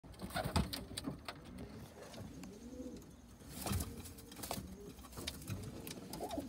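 White Inglizi owl pigeons cooing: repeated low, rising-and-falling coos. Scattered sharp taps and knocks come through, the loudest about half a second in and again just past the middle.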